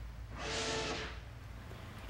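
A short breathy vocal sound from a man, a sigh-like exhale lasting about a second, over a faint steady low rumble.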